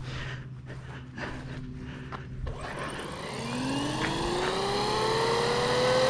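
Castle 1520 1650kv brushless motor in a Traxxas Maxx V2 RC monster truck spinning the wheels up under gentle throttle. The whine starts about halfway through and climbs slowly and steadily in pitch and loudness as the tyres balloon.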